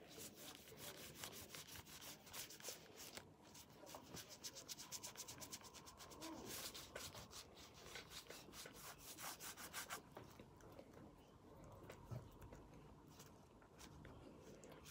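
Faint, quick scratchy strokes of a drawing tool rubbing on paper as an area is coloured in. The strokes thin out after about ten seconds.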